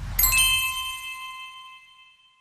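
Logo-animation sound effect: a whoosh with a low rumble sweeps in, then a bright bell-like ding of several tones at once rings out and fades over about two seconds.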